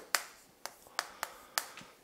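Chalk tapping and scraping against a chalkboard as characters are written: about six sharp taps, unevenly spaced.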